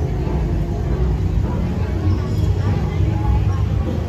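Busy street ambience: a steady low rumble of passing motorbikes and traffic, with people's chatter in the background.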